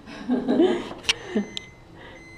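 A woman laughing softly to herself, a few short breathy chuckles, with a sharp click about a second in.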